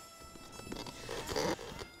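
A rough rustling, scraping noise of movement that grows louder around the middle, under a faint lingering held music note.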